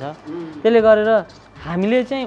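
A man's voice speaking, with a drawn-out, level-pitched syllable about half a second in.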